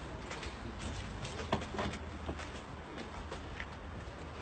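A few short knocks and scrapes as a coffin is slid into the back of a hearse, the sharpest about a second and a half in, over a low steady rumble.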